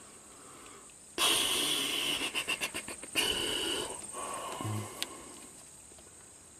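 Hands handling multimeter test leads and probes: about three seconds of rustling and scraping, a short low hum, then a single sharp click about five seconds in.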